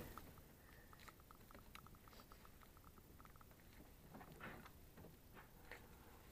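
Faint, quick run of small ticks, then a few soft scuffs, as gloved hands twist a new PCV valve into its seat in an engine's valve cover.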